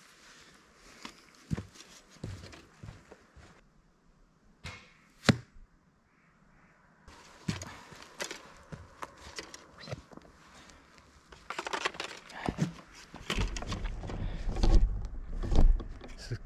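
Footsteps on a forest dirt path with arrows knocking in a quiver and gear rustling, as an archer walks with his bow. One sharp click stands out about five seconds in, and the rustling grows louder with a low rumble near the end.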